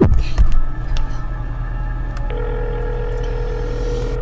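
An outgoing phone call ringing out over the truck's cabin speakers: a steady ringback tone starts about halfway through and lasts about two seconds, over the low steady hum of the truck's cabin.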